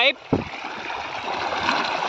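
Water gushing from a large pipe outlet fed by a tractor PTO-driven pump, a steady rushing splash onto flooded ground as the pump delivers at full force. A brief low thump comes about a third of a second in.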